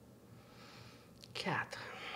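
Speech only: a woman's voice counts "quatre" (four) once, about a second and a half in. Before it there is only a quiet room.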